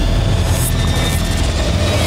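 A steady, loud rumbling noise with a deep low end, like an engine or aircraft heard in the broadcast sound.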